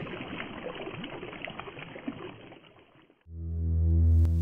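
Faint steady rush of river water that fades out over about three seconds. Then, after a moment's quiet, a deep synthesizer drone swells in and holds.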